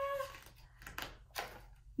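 A woman's voice holding a long, slowly rising "aaah", a mock build-up to a sneeze, that tails off about a third of a second in. It is followed by two short breath sounds about a second in.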